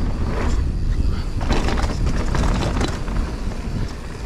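Marin Alpine Trail XR mountain bike rolling fast down a dirt trail: a steady low rumble of wind and tyres on the camera microphone, with frequent short clicks and rattles from the bike over roots and bumps.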